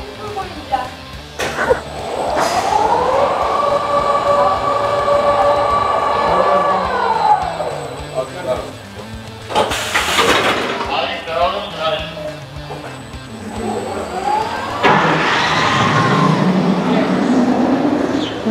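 Launched roller coaster trains running on their steel track. A motor whine rises, holds steady for a few seconds and falls away. Around ten seconds in there is a loud rush, and near the end another train surges past with a rising and falling rush.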